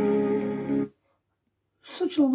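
A vocal group's song playing through a tablet speaker, holding a steady chord, cut off abruptly a little under a second in as playback is paused. Silence follows, then a man starts speaking just before the end.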